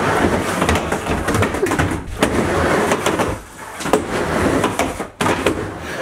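Skateboard wheels rolling back and forth on a wooden indoor mini ramp, a loud rumble that echoes in a small room. It dips briefly a little past halfway, and sharp clacks of the board hitting the ramp come about two, four and five seconds in.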